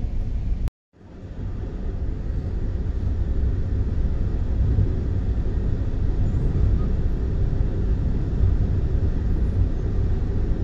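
Steady low rumble of a moving express train heard from inside an air-conditioned coach, wheels running on the rails. The sound drops out suddenly under a second in, fades back in, and then holds steady.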